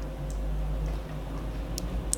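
Fingertips working moisturizer into the skin of the face: two faint clicks, one near the start and one near the end, over a low steady hum.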